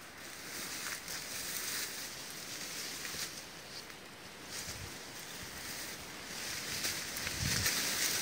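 Leaves and brush rustling close to the microphone, mixed with wind noise, as a person pushes through dense undergrowth. There are a couple of low thumps, about midway and near the end.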